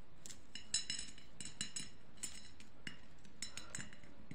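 Small faceted beads clinking lightly against each other and the ceramic plate as they are handled and strung on thread: a dozen or so quick, high, ringing ticks in loose clusters.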